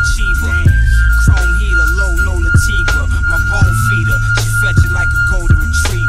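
Lo-fi boom bap hip hop beat: a steady drum loop with a long held high note over it and a voice in the mix.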